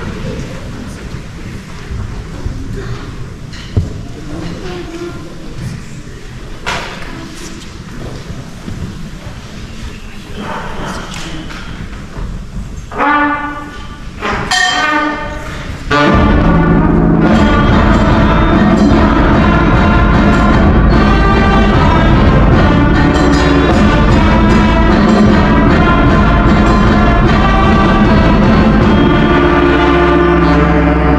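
A school concert band of brass, woodwinds and percussion begins a piece. Low room noise with a few knocks gives way to two short notes, then about sixteen seconds in the full band comes in loudly and plays on.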